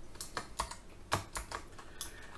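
Computer keyboard typing: a string of separate keystroke clicks at an uneven pace.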